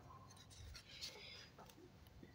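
Faint rustle and a few light taps of a clear plastic ruler being laid on notebook paper and slid into place, with a short scrape about a second in.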